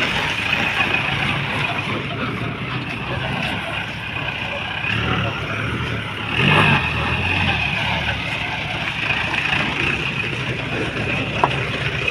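Mahindra Bolero jeep's engine running as the jeep is driven slowly on a gravel road, with a brief louder surge about six and a half seconds in.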